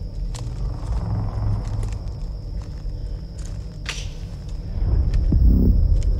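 Footsteps and rustling through forest undergrowth over a steady low rumble, with a few faint snaps. About five seconds in comes a louder low thud that sounded to the walker like a big branch breaking.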